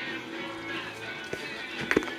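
Background music playing quietly, with two short knocks in the second half, the second one louder.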